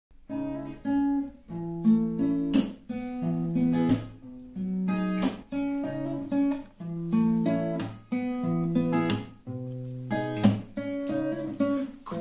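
Acoustic guitar playing a slow picked melody over chords, with sustained notes ringing out and sharp strummed strokes roughly once a second.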